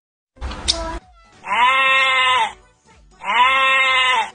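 A brief sound about half a second in, then two long animal bleats, each lasting about a second and falling slightly in pitch at the end.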